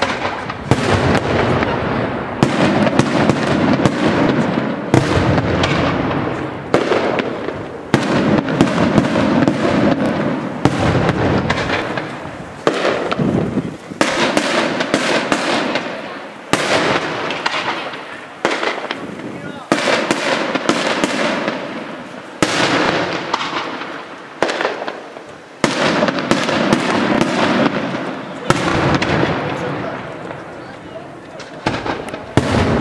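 Daytime aerial firework shells bursting overhead in quick succession, sharp loud bangs each trailing off in a rolling echo. They come in clusters of several a second, with brief lulls between.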